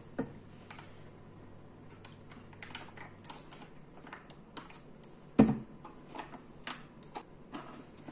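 Scattered light clicks and taps from kitchen handling, a wooden spoon in a saucepan and a small plastic soap pouch being squeezed and poured, with one sharper knock about five and a half seconds in.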